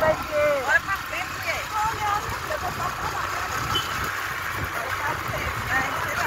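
Wind buffeting the phone's microphone, with road noise, while riding on a moving motorcycle. Voices speak briefly in the first two seconds, then a steady rough rushing continues.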